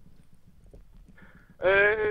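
A short pause with only faint room noise, then a man's voice over a telephone line begins about a second and a half in with a drawn-out hesitation sound, 'yy'.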